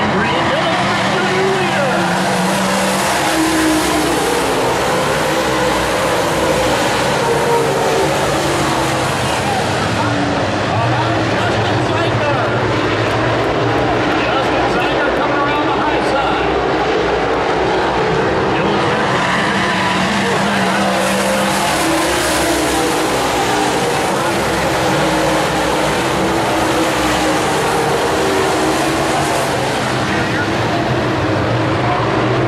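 A pack of Super Late Model dirt-track race cars running around the oval, their V8 engines a loud continuous drone that swells twice as the cars come past and then eases off.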